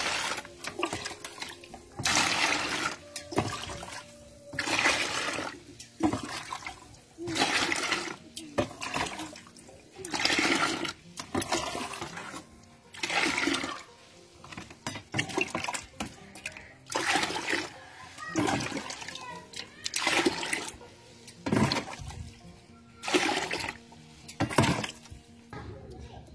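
Water poured from a stainless steel mug into a plastic bucket of liquid organic fertilizer, splashing in a dozen or so separate pours of about a second each, every two seconds or so. The fertilizer concentrate is being diluted with ten parts water.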